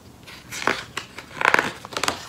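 Paper rustling and crinkling as the pages of a hardcover picture book are handled and turned, in a few short bursts.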